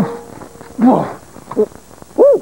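Voiced animal noises for a puppet pet: a short, rough cry falling in pitch about a second in, then a brief shorter sound.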